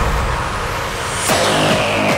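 Hardstyle track in a transition with no beat: a rising noise sweep, then a falling whoosh over a low rumble near the end.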